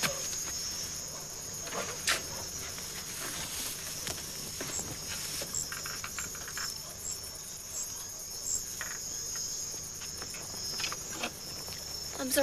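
Steady, high-pitched chirring of insects, with a few faint knocks scattered through, the sharpest about two seconds in.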